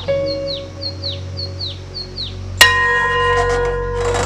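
Bell tones struck twice, ringing on with long overtones: a softer strike at the start and a louder one about two and a half seconds in. Between them a bird calls in a run of short, repeated chirps that fall in pitch.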